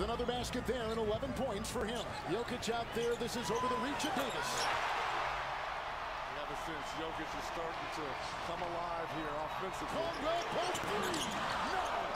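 Basketball game audio: a ball dribbling on a hardwood court and sneakers squeaking, over arena crowd noise that swells about four seconds in.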